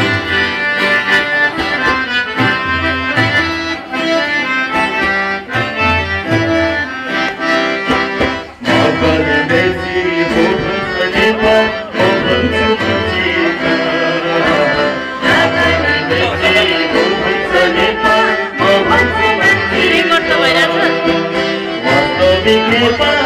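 Live folk music: a harmonium plays a sustained melody over a hand drum's steady low beat. After a brief break about eight seconds in, the music restarts and a voice sings over it.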